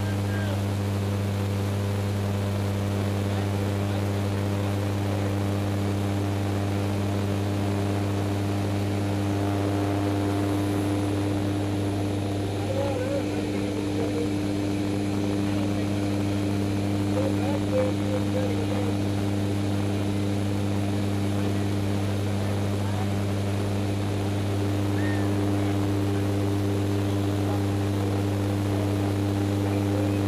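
Steady drone of a propeller jump plane's engines heard from inside the cabin: a constant, even low hum with no change in pitch or level.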